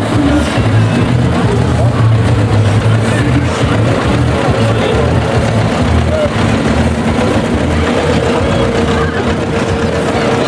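Old tractor's diesel engine running as it drives slowly past, with music and voices of the crowd mixed in.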